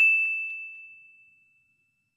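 Notification-bell 'ding' sound effect: a single bright ringing tone that fades out over about a second and a half.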